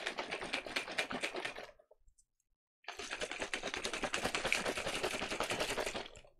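G Fuel drink mix being shaken hard in a shaker cup: a rapid, even rattle of about ten strokes a second. It stops for about a second after nearly two seconds, then starts again.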